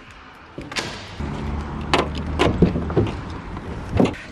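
A door handle and latch clicking, then doors being opened and shut with a series of knocks and thumps, the loudest about halfway through, over a low steady rumble.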